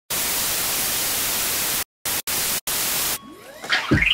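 A loud hiss of white-noise static that cuts out abruptly for short moments three times, then stops about three seconds in. Fainter sweeping tones follow, rising in pitch toward the end.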